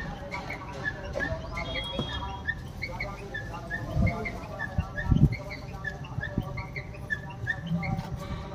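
A wooden stick stirring puffed rice in a tall steel pot, with a few dull knocks against the pot about midway. A steady run of short high chirps, two or three a second, goes on behind.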